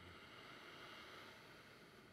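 A faint Ujjayi breath drawn through the nose: one long, even breath with a soft throaty hiss, fading out near the end.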